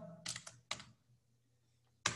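Computer keyboard being typed on: a handful of quick key clicks in the first second, then near silence.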